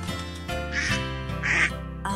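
Two short cartoon duck quacks, the second louder, over the instrumental introduction of a children's song.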